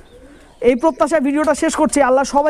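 A man speaking Bengali, with faint pigeon cooing in the short pause before he goes on.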